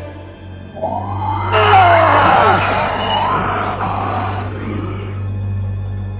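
Horror film score: a low steady drone, then a loud swell of screeching, wailing sound that starts about a second in and dies away about five seconds in.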